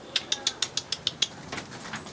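A quick run of seven sharp clicks, about six a second, followed by a few softer clicks near the end.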